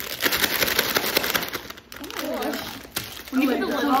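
Plastic candy bags crinkling as they are cut open and emptied into a plastic tub, a busy rustle in the first half, then girls talking and laughing over it.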